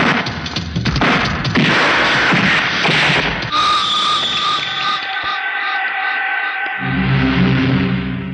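Film fight-scene soundtrack: dense noise with repeated punch and impact hits over the background score for the first few seconds, then sustained, tense background music with held high tones, joined by a deep low note near the end.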